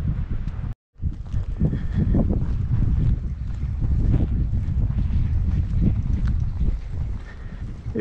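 Wind buffeting the microphone outdoors, a steady rumbling noise, broken by a short dropout just before one second in.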